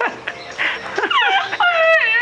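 High-pitched, falling whimpering squeals from a young woman with her mouth full and closed, coming one after another from about a second in.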